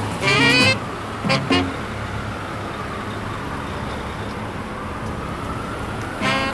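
Busy city street traffic: a steady hum of engines and road noise, with a faint whine that slowly rises and then falls. Brass-band music cuts off within the first second and returns briefly a moment later.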